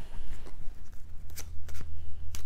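A deck of tarot cards being shuffled by hand, a rustle with a few sharp card snaps in the second half, as a card is sought to clarify the reading.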